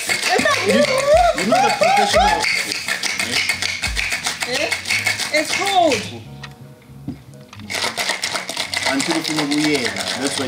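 Ice rattling in steel cocktail shakers being shaken hard, a fast clatter over background music and voices. The rattling breaks off for a moment about six seconds in, then resumes.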